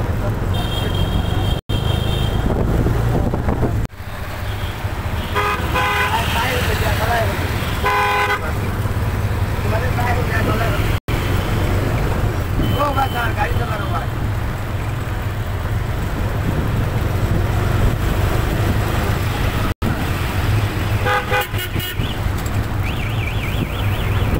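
Busy street traffic: a steady low rumble of engines and tyres, with short vehicle horn toots several times, some in quick repeated beeps near the end.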